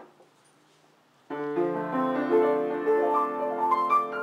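Weber seven-foot-six grand piano, newly restrung, being played. The playing begins a little over a second in, with several notes sounding together and ringing on.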